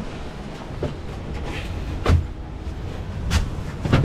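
A low rumble with three sharp knocks, about two seconds in, a little after three seconds and just before the end, as of a person climbing into an auto-rickshaw and knocking against its frame and canopy.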